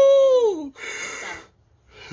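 A person's drawn-out 'woo', the pitch rising then falling, followed by a breathy laugh that dies away about a second and a half in.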